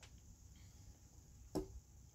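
A drinking glass set down on a wooden desk with a light click, then a short, louder knock about a second and a half in, against faint room hiss.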